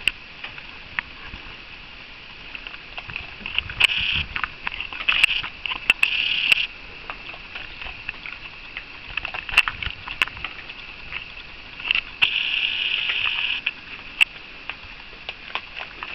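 A raccoon handling the camera and tugging and chewing its strap right at the microphone: sharp clicks and taps, with a few scratchy rustling bursts about four to six seconds in and again around twelve seconds.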